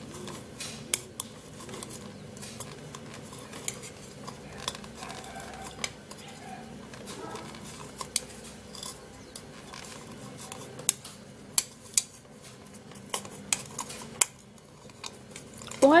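Metal spoon crushing aspirin tablets in a bowl: irregular sharp clicks and scraping of the spoon against the bowl as the tablets break into powder.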